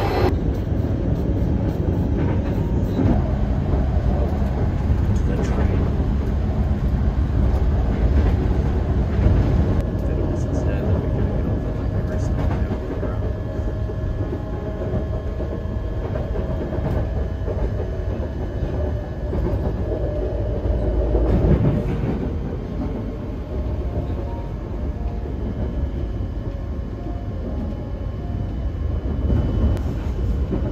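Electric commuter train running, heard from inside the carriage: a steady rumble of wheels on track, with a faint steady whine through the middle and a brief louder swell a little past two-thirds of the way in.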